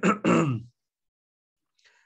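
A man clearing his throat once, a short rough vocal sound in the first half second. His voice is hoarse and his throat sore.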